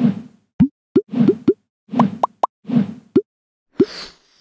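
Cartoon sound effects for an animated logo: a quick run of soft, bouncy low thuds mixed with short plops that slide upward in pitch, about a dozen in four seconds, ending in a brief hiss.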